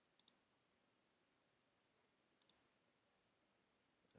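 Two faint computer mouse clicks about two seconds apart, each a quick pair of ticks, clicking through a web sign-in page; otherwise near silence.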